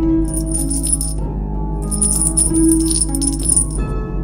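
Instrumental background music with sustained pitched tones, over which a rattle is shaken in two spells: about a second near the start, then about two seconds after a short gap.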